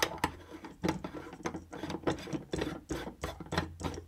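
A screw-base LED bulb being twisted into a lamp socket: the threads of the base scrape and click in the holder in an irregular run of small clicks and rasps, about three to four a second.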